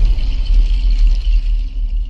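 Deep, steady low rumble from a logo intro's sound design, with a faint hiss above it, easing slightly near the end.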